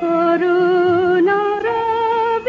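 Devotional song: a solo voice enters sharply and sings a slow melody with vibrato, each held note stepping upward in pitch.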